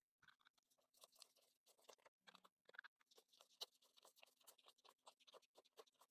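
Faint, irregular crinkling and flicking of Canadian polymer banknotes being handled and counted by hand.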